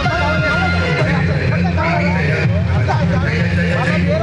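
Many voices talking and calling out at once over the steady low running of a crowd of scooter and motorcycle engines moving slowly together.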